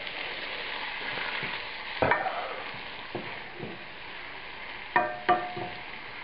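Diced onions, celery and juicy defrosted wild mushrooms frying in butter in a large non-stick pan, with a steady sizzle. A wooden spatula stirring them scrapes and knocks against the pan about two seconds in and again near the end.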